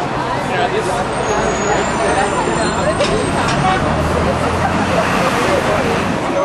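Busy city street: steady road traffic with a vehicle engine running nearby, mixed with the voices of passers-by talking.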